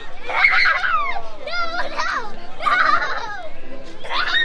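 Children's high-pitched voices talking and calling out in several short bursts.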